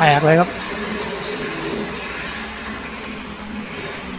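A brief spoken phrase, then steady background noise with a faint low hum and no distinct events.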